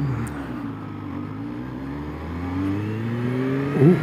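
Kawasaki Z H2 SE's supercharged inline-four engine pulling away from a stop, its note steady at first and then rising in pitch as the bike accelerates through the second half.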